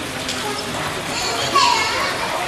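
Children's voices and chatter among onlookers, with one loud high-pitched child's shout about a second and a half in.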